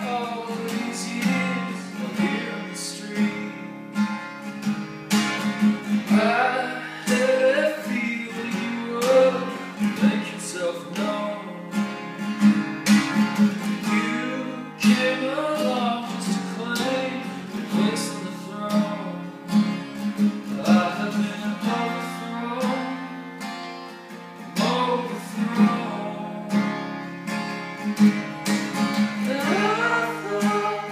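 A man singing with a strummed acoustic guitar: steady rhythmic strumming throughout, with sung phrases coming and going over it.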